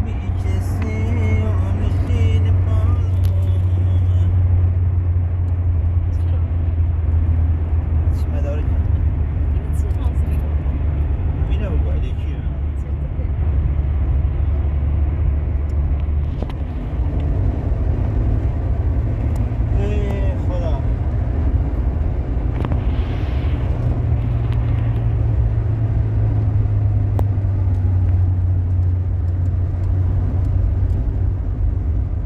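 Road noise inside a moving car: a loud, steady low rumble of engine and tyres, which shifts a little about halfway through.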